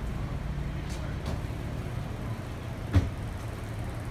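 City street traffic: a steady low rumble of cars on the road. A single sharp thump stands out about three seconds in.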